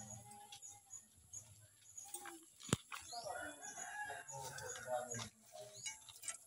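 Poultry calling, with a longer crow-like call from about three seconds in to just past five. A single sharp click comes shortly before it.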